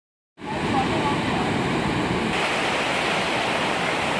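Steady rushing of a waterfall: a constant dense roar of falling water that sets in about a third of a second in and holds level, its hiss growing a little brighter after about two seconds.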